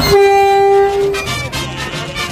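A Tren Maya train's horn sounds once: a single steady note held for about a second, over background music.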